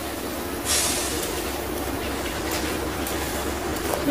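Spice masala with fried brinjal pieces sizzling and simmering in a steel kadhai as it cooks down with a little added water, over a steady low hum. A brief louder hiss comes about three-quarters of a second in.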